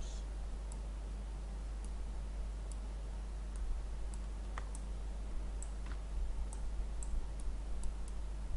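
Scattered light clicks of a computer mouse, about a dozen at irregular intervals, over a steady low hum.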